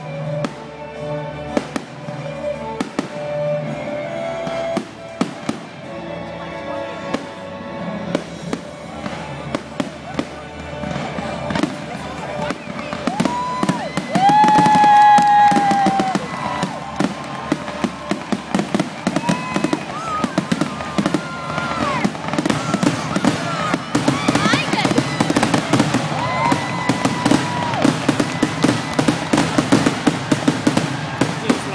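Fireworks finale: a rapid volley of aerial shell bursts, the bangs coming thicker and denser toward the end.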